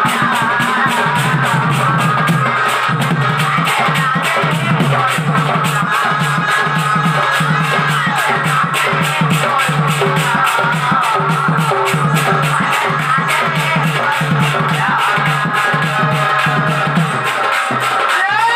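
Live folk dance music: a double-headed barrel drum struck in a fast, steady beat over a regular low pulse, with a sustained keyboard melody on top.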